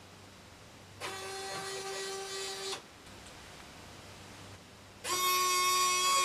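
Small servo motors in the ALTAIR EZ:1 robot's arm whining steadily as the arm moves its pointer, in two bursts of under two seconds each, about a second in and again near the end.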